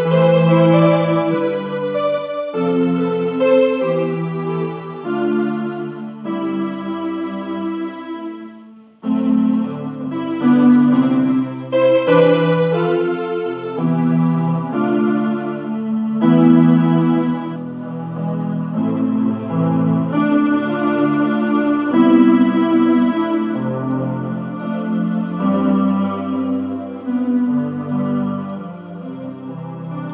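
Electronic keyboard playing a slow progression of sustained chords, with each chord held about a second before the next. There is a short break about nine seconds in before the playing resumes, and it fades out near the end.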